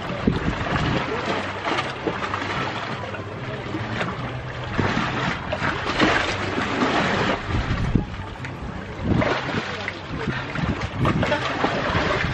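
Sea water sloshing and splashing around a swimmer and metal ladder steps, with wind buffeting the microphone in irregular gusts.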